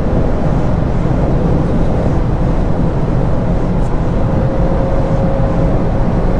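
Cabin noise inside a VW Golf R Mk8 at Autobahn top speed on a wet road: a steady rush of wind and tyre noise on wet tarmac, with the engine underneath, as the car slows from about 266 to 240 km/h. A faint steady hum joins in near the end.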